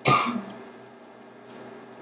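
A person clearing their throat once, a short sharp rasp at the very start that dies away within half a second, followed by a quiet room.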